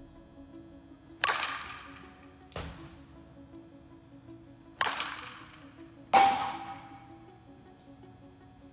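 Softball bat hitting tossed softballs in a large echoing indoor hall: four sharp cracks, each ringing out briefly, the last the loudest with a lingering ring.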